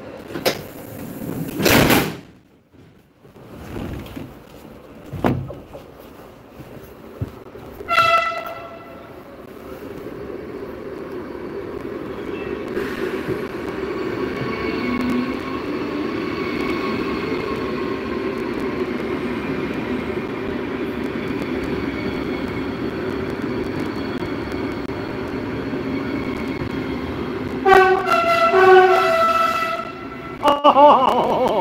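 Loco-hauled N-Wagen passenger train heard from inside a coach: a few loud knocks at the stand, a horn tone about eight seconds in, then the train pulls away and runs with a steady rolling rumble. Near the end a horn sounds twice.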